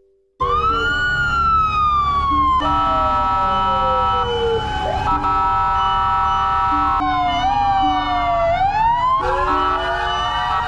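Several fire-truck and rescue-vehicle sirens wailing at once, their pitches sliding up and down out of step with each other, with some steady tones underneath; they cut in suddenly just after the start. The sirens are sounded together as a last-alarm tribute for a fallen fire volunteer.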